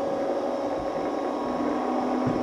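Steady hum of a small running machine, the motors and fan of a motorized sculpture that has just been switched on, holding a few constant tones with no change.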